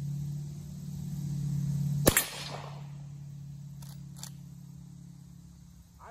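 A single rifle shot from a Marlin 1894 lever-action in .45 Colt (pistol ammunition in a 20-inch barrel), about two seconds in, with a short echo after it. Two light clicks follow about two seconds later as the lever is worked.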